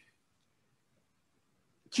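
Near silence: a pause in a man's speech, with his voice coming back in just at the end.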